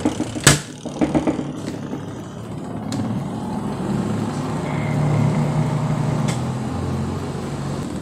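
Spin dryer of a twin-tub washing machine running, its motor humming steadily as the basket spins, with a sharp knock about half a second in. The motor runs again now that a broken wire has been reconnected.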